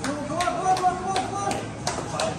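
A quick run of sharp hand slaps, about two to three a second, over a faint held tone.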